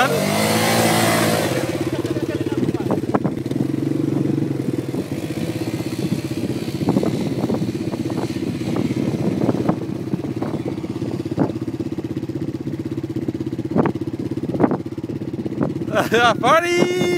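Yamaha Grizzly quad bike engine revving as it pulls away, then running steadily as it rides across the sand, with scattered short sharp clicks over it.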